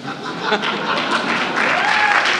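Audience applause that swells about half a second in, a dense clapping from many hands.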